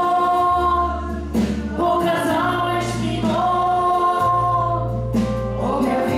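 A live church worship band plays a slow song: held sung notes over keyboard, guitar and drums, with low bass notes that change every couple of seconds.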